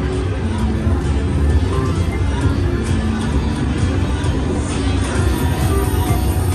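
Aristocrat Buffalo Triple Power video slot machine playing its game music and reel-spin sounds as the reels spin and stop, over a steady din of casino floor ambience with other machines and distant voices.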